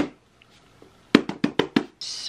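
A single sharp click, then about a second later a quick run of about six sharp knocks, roughly seven a second.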